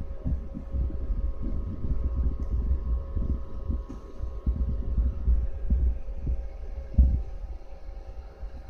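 Irregular low rumbling thumps of handling noise on a handheld camera's microphone, with one heavier knock about seven seconds in, over a steady hum with faint whining tones from the running computer.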